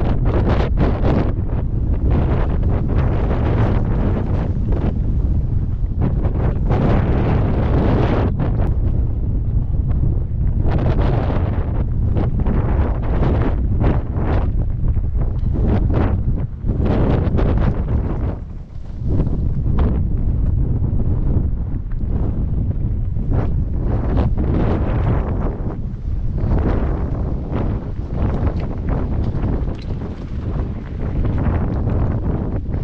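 Wind buffeting a helmet-mounted camera's microphone during a mountain bike ride, a constant heavy rumble with irregular rattling and crunching from the bike rolling over loose rocks. The wind eases briefly about two-thirds of the way through.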